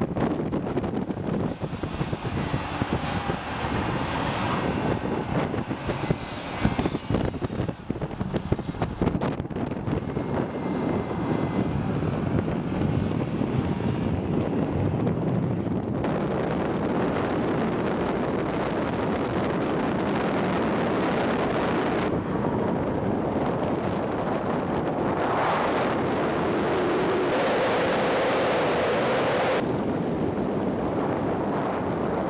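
BMW X6 M's twin-turbo V8 driven at speed on a track, its engine note mixed with heavy wind and tyre rush. The sound changes abruptly a couple of times, and near the end an engine tone rises.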